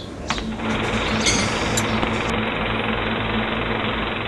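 A steady, rapid mechanical rattle over a low hum, starting about half a second in and holding even, laid over the cut between scenes as a transition sound.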